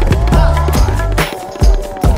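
Electronic remix music built on tabla playing: rapid tabla strokes, some with sliding pitch, over a heavy bass line, with a strong hit near the end.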